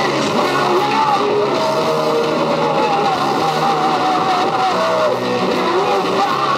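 A live heavy metal band playing loudly: distorted electric guitar, bass and drums, with a lead line of bent, wavering notes over the top.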